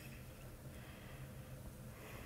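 Quiet room tone with a faint steady low hum and no distinct event.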